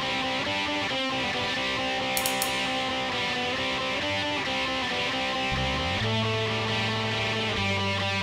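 Instrumental rock song intro: electric guitars playing sustained, ringing chords, with a bass guitar coming in about halfway through.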